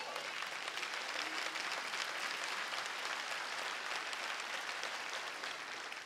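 Congregation applauding steadily, the clapping fading away near the end.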